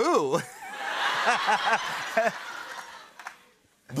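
A laughing 'boo', then about three seconds of laughter: short chuckles over a noisy spread of laughing that dies away near the end.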